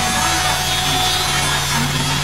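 Angle grinder with a yellow polishing disc running steadily against the welded joints of a stainless steel square-tube frame, a continuous grinding hiss over a low motor hum.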